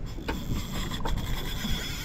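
Fishing reel working against a hooked fish: a steady rasping mechanical whir with a faint high whine running through it, and one sharp click about a second in.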